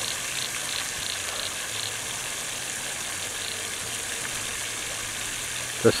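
Fan-shaped fountain jets spraying water that falls back onto the dam's surface: a steady hiss of spray.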